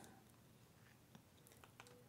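Near silence: faint room tone with a few faint clicks, one about a second in and a couple near the end.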